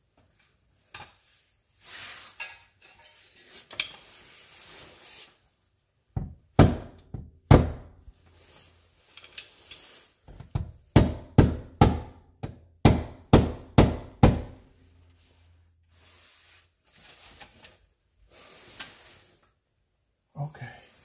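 A run of about fifteen sharp metal knocks and clunks, two or three a second, from about six to fifteen seconds in, as tools and parts are worked against a transmission and crossmember under a car. Quieter handling and scraping come before and after.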